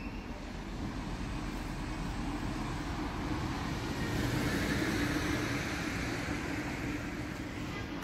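A steady rumble of road traffic that swells in the middle, as a vehicle goes by, and then eases off.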